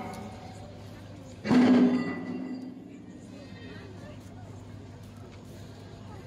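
Voices of onlookers at a shipyard, with one loud shout about one and a half seconds in that fades over a second.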